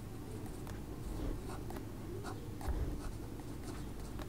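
Pen writing on paper: a run of short scratchy strokes as words are written out, over a steady low background hum.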